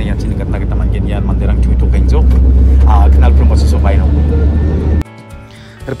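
Bus engine and road noise heard from inside the passenger cabin: a heavy, steady low rumble that grows louder toward the middle, with a few indistinct voices over it. About five seconds in it cuts off abruptly and quiet background music takes over.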